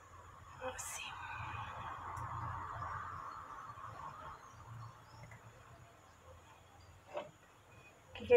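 Faint handling sounds of an apple on a wooden stick being turned in hot sugar syrup in a tilted stainless steel saucepan to coat it: a light tap against the pot about a second in, a soft swishing for a few seconds, and another tap near the end.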